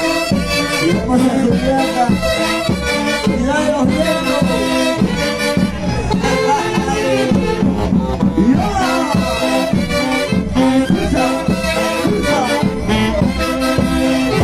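Live dance music from a Peruvian orquesta with saxophones, playing a brisk traditional Andean dance tune over a steady beat.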